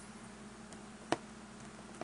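A single sharp click about halfway through as a small soft-rubber toy figure is picked up and handled, over a faint steady background hum.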